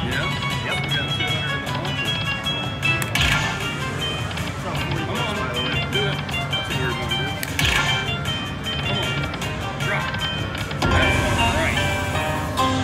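Aristocrat Dragon Link slot machine playing its hold-and-spin bonus music and chimes, with a bright burst of sound about every four seconds as each remaining free spin is played.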